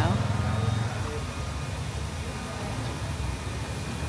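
Street traffic: a steady low rumble of passing motor vehicle engines.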